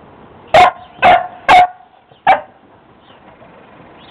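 Old English Sheepdog puppy barking: four short, loud barks in quick succession over about two seconds.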